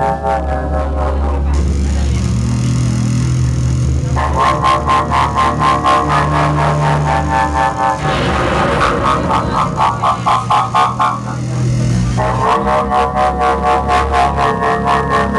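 Live avant-noise rock band playing loudly: a deep, steady drone and shifting bass notes under a fast, even pulsing beat. Layered buzzing tones drop out about a second and a half in, return after about four seconds, and give way to a noisier wash around eight seconds.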